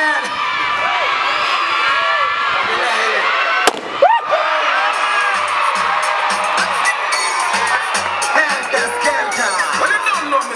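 A crowd of children shouting and cheering, broken about four seconds in by a balloon bursting with one sharp bang. Music with a steady beat comes in about a second later under the cheering.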